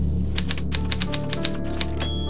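Manual typewriter keys striking in a quick run of about a dozen sharp clicks, over steady background music.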